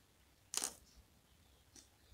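Small plastic LEGO pieces handled on a cardboard tray: one sharp click about half a second in, then two faint ticks.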